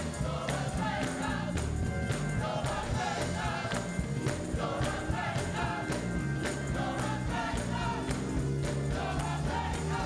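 Gospel choir singing over a live band, with hand-clapping on a steady beat.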